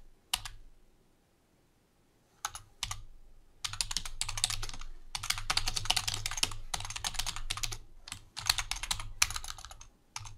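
Typing on a computer keyboard: a lone keystroke, a near-silent second or so, a couple of keystrokes, then quick runs of keystrokes from about three and a half seconds in, broken by short pauses between words.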